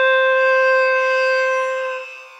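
A bamboo flute holding one long, steady note in a devotional song's instrumental passage, fading near the end.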